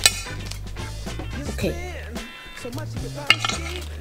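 Background music with a steady bass line, over a kitchen knife cutting a rice-paper roll on a plate. There are sharp taps of the blade on the plate near the start and again near the end.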